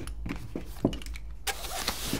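Handling noise of a padded nylon pistol bag as a pistol is pushed down into its gun pouch: a few soft knocks in the first second, then a continuous scratchy rustle of fabric from about halfway through.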